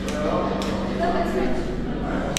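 Background chatter of a group of people in a large, echoing hall, with a steady low hum that fades out near the end.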